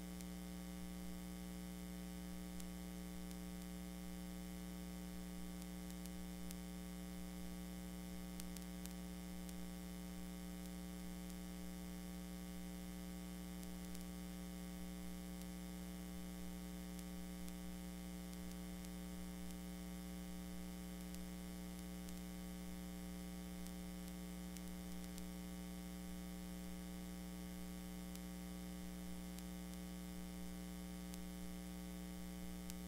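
Steady electrical mains hum with a faint hiss, unchanging throughout.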